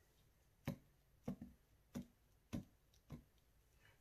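Five light taps about every half second: a silicone pen mold filled with resin being tapped on the work board to make the resin run down and under the ink refill set inside it.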